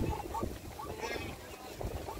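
Wildebeest and zebra herd running over dry grass, a low rumble of hooves under wind on the microphone, with a short pitched animal call about a second in.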